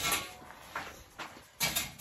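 Short scrapes and rustles from a person shifting and sitting down, with handling noise from a phone rubbing against her clothes; a louder scuff comes near the end.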